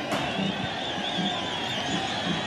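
Stadium crowd noise with high, wavering whistles from the stands over a steady background hum of the crowd.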